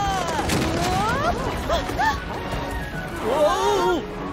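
Cartoon characters' wordless cries, with pitch sliding up and down, over background music, with a crash about half a second in.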